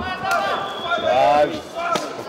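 Men's voices shouting in a large arena hall over a crowd, with two sharp impact slaps, one just after the start and one near the end, from kickboxing strikes landing.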